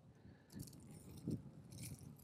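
Faint crumbling and crunching of compacted soil broken apart by hand on a spade blade, a few soft crunches as the platy clod splits.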